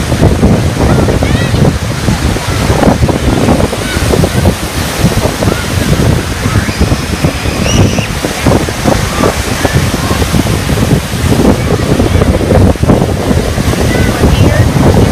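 Heavy wind buffeting the microphone over lake surf, with big waves breaking on the beach. The noise is loud and unbroken and rises and falls in gusts.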